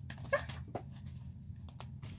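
A deck of tarot cards handled and shuffled in the hands, with soft card clicks. There is also a short, high whimper about a third of a second in.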